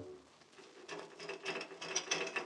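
Radio sound-effect knocking on large gates: a run of soft, quick knocks starting about a second in, just after an orchestral chord dies away.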